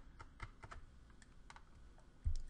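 Faint computer keyboard key clicks: several light, separate taps spread across two seconds as keys are pressed to switch from PowerPoint to Excel.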